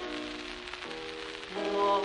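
Instrumental accompaniment on an early gramophone record, with held notes that change about a second in. A man's tenor voice enters near the end, singing with vibrato, and it is louder than the accompaniment. A steady hiss of record surface noise lies under it all.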